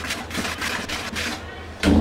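Wire whisk stirring dry flour in a plastic bowl: a quick, rhythmic run of scratchy strokes that stops about one and a half seconds in.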